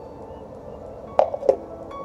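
A plastic funnel set down on a small wooden table: two sharp knocks about a second in, a moment apart, over faint background music.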